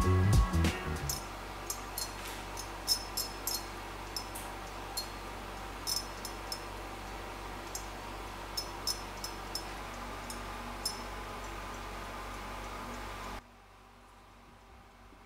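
Irregular sharp crackling clicks of electric arcs inside a neon-filled H Nixie tube being aged at high current, over a steady low hum. The crackle is like cracking glass. The arcs come from the tube discharging abnormally early in the aging process. The sound cuts off suddenly near the end.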